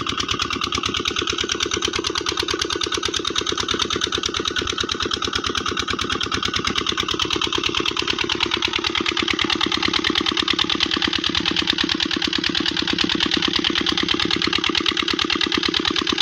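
Petter single-cylinder diesel engine running steadily with an even, rapid firing beat while it drives a tube-well water pump through a flat belt.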